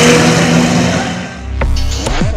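Two drag cars, a VW Santana 4x4 and a Chevrolet Marajó, running flat out down the strip, their engine note fading with distance. About one and a half seconds in, it gives way to a logo sound effect: a low rumble and a whoosh.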